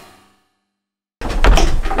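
A fading tail, about a second of dead silence, then a sudden loud rush of noise with a heavy low end starting just past the middle.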